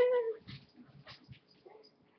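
A dog gives one short whine at the very start, falling in pitch, followed by faint scattered clicks and shuffling.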